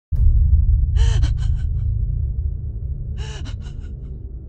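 A deep low rumbling drone starts suddenly and slowly fades, while a person gasps twice, about two seconds apart, each gasp followed by three quick, shaky breaths.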